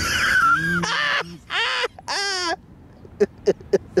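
A person's high, wavering vocal sound held for about a second, then two short whining cries that bend in pitch. In the last second comes rhythmic laughter, about four pulses a second.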